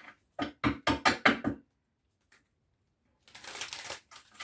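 A quick run of about six sharp knocks on a hard surface, then after a pause of about a second and a half a short rustle near the end, as of tarot cards being handled.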